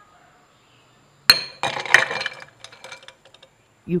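Glassware clinking: a sharp glass-on-glass clink with a brief ring about a second in, then about a second of scraping and small taps as the glass rod moves in the thick slurry, thinning to a few light ticks.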